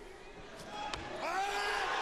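Faint weightlifting-hall sound from the competition footage: voices calling out with rising and falling pitch from about half a second in, and a couple of light knocks.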